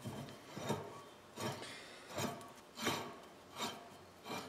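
Metal rasping in five even strokes, about one every 0.7 s, as a ball-joint rod end is turned by hand on the threaded rod of a forklift hydraulic cylinder.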